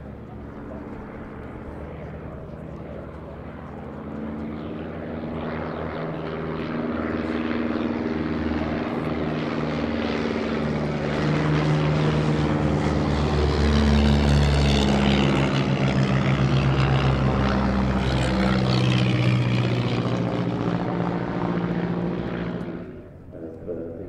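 Miles Magister's de Havilland Gipsy Major four-cylinder engine and propeller in a low flypast. The engine note grows louder until about halfway, drops in pitch as the aircraft passes, and falls away suddenly shortly before the end.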